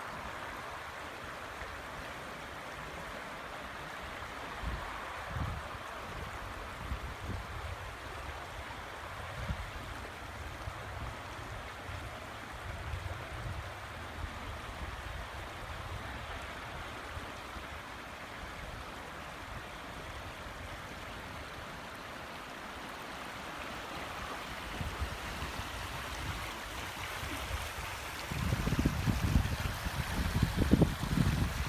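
Steady road and tyre noise of a vehicle driving on a rough road, with irregular low thumps as it goes over bumps.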